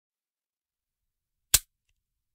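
A single sharp percussive snap about one and a half seconds in, after silence.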